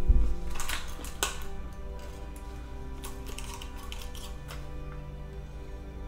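Crinkly plastic blister pack and foil crackling in sharp clicks as peanuts are pushed out through the foil, in a cluster about a second in and again around three to four seconds. A loud thump comes at the very start, and background music with held tones runs underneath.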